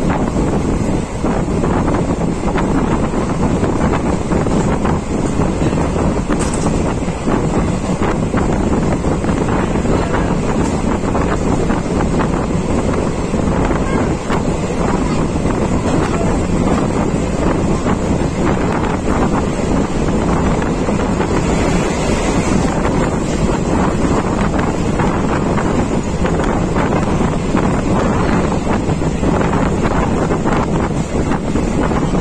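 Wind buffeting the microphone at the open door of a moving passenger train, over the steady running noise of the coaches on the track. The noise is loud and unbroken throughout.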